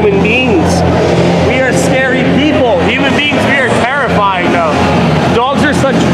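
Several voices talking and exclaiming over one another, with a steady low hum underneath.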